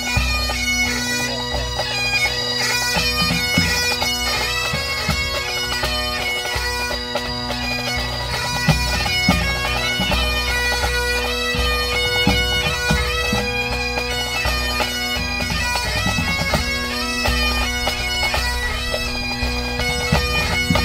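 Scottish pipe band playing: Great Highland bagpipes with steady drones under the chanter melody, and the band's drum corps beating along.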